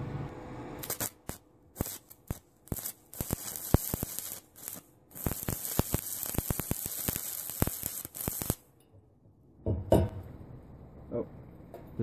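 Stick-welding arc from a Selco Genesis 140 inverter welder: irregular crackling and sputtering from about a second in, thickening into a steady crackling hiss, then cutting off suddenly as the welder shuts off, having blown the 8-amp fuse on its isolation transformer at too high a current.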